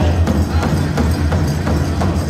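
Powwow drum beating a steady, even rhythm of about three strikes a second, as part of a live drum song.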